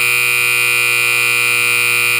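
Ice rink scoreboard horn sounding one loud, steady, unbroken blast.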